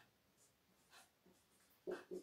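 Faint strokes of a marker pen writing on a whiteboard, a few light scratches in near silence, with a short louder sound just before the end.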